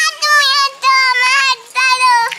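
A young child's high voice singing a sing-song chant in about three drawn-out phrases, each note held fairly level.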